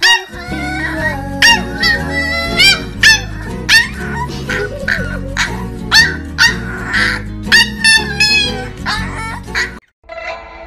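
A corgi puppy barking in a rapid stream of short, high yips, roughly two a second, over background music.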